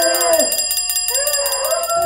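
A bell ringing rapidly, its hammer striking many times a second in an unbroken trill for about two and a half seconds. A person's drawn-out voice sounds under it.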